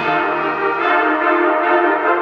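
High school wind ensemble playing held chords in the middle and upper range, with no low bass underneath.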